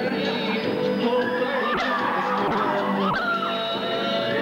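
Electronic keyboard music: sustained synthesizer chords under a melody line that bends and wavers in pitch.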